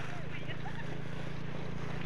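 A steady low hum of an engine running at idle, even in level throughout, with a few faint sounds above it.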